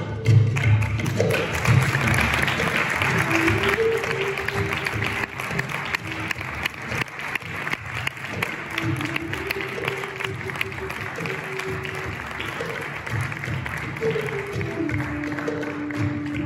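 Audience applauding over background music, a slow melody of long held notes with light percussion. The applause is loudest in the first few seconds and then thins out.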